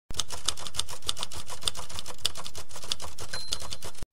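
Typewriter sound effect: a rapid, uneven clatter of key strikes over a low hum, stopping suddenly at the end.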